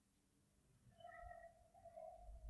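Near silence, with a faint steady tone that starts about a second in and lasts about a second.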